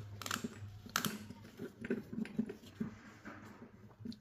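Irregular light plastic clicks and ticks from a four-pole Speakon speaker cable connector as its housing is screwed tight by hand, with a sharper click about a second in.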